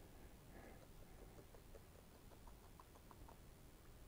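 Near silence, with a few faint, very short peeps from an animal around the middle.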